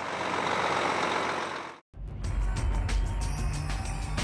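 Semi-trailer truck moving off, heard as a steady hiss that cuts off sharply a little under two seconds in. After a brief silence, music with a deep bass and a beat starts.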